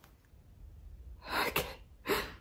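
A woman's short, sharp, breathy burst about one and a half seconds in, with a second one starting at the very end.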